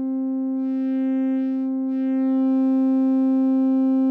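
A sustained synthesizer note through the Trogotronic m/277 tube VCA while its pan control is turned, one steady pitch with a bright stack of overtones. The upper overtones shift midway and the level rises slightly about two seconds in, as the m/277 adds distortion to the channel being faded out.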